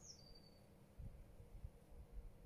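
Near silence with a faint, high bird call: a whistled phrase stepping down in pitch in the first half second. A few faint low thumps follow around the middle.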